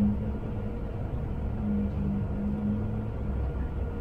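Low steady rumble of a vehicle engine, with a faint hum that comes and goes through the middle.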